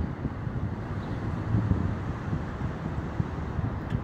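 Steady low rumble of outdoor background noise, a pause with no speech.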